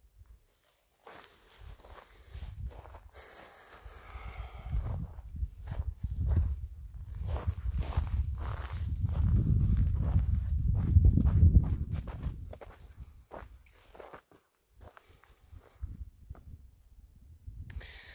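Footsteps on dry dirt and brush, with crackly steps scattered throughout. A low rumbling swells to its loudest a little past the middle and then dies away.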